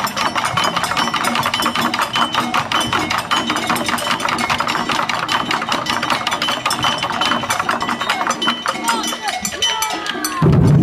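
Taiko drummers playing a fast, even run of light, sharp clicking strokes, with little of the drums' deep boom. Near the end the players' voices call out.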